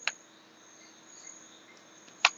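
Near silence: faint background hiss with a thin, steady high-pitched whine, and a single short click right at the start.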